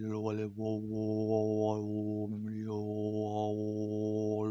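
Male overtone singing: one low drone is held steady while the shaping mouth brings out whistling upper tones that glide up and down above it, with a brief break about half a second in.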